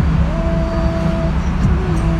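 Steady low rumble of car engine and tyre noise inside the cabin while driving through a road tunnel. A steady held tone sounds over it for about a second.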